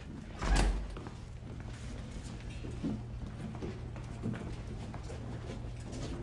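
Several people in boots walking and shuffling out of a room on a hard floor, scattered knocks of footsteps, with a heavy low thump about half a second in over a steady low hum.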